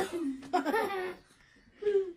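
Laughter in a few short bursts, one over the first second and a shorter one near the end, with a small child's giggling among it.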